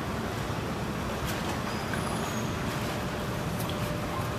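Steady low rumble of background noise with a few faint clicks.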